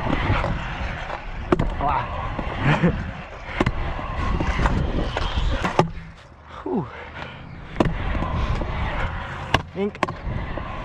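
Stunt scooter wheels rolling on concrete, with sharp clacks every second or so as the scooter hits edges and lands. The rolling noise drops away for about a second and a half after six seconds, then a clack as it comes back down.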